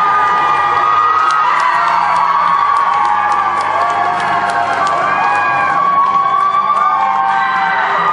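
A crowd singing and cheering together over music, many voices at once.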